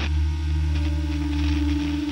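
A steady low droning pad with several held tones and no beat, the ambient intro of a death metal track.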